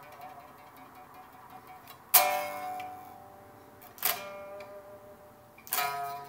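Jackson electric guitar played slowly: three notes or chords struck about two seconds apart, each left to ring and fade. It is a slow riff that the player calls the first heavy metal riff of all time.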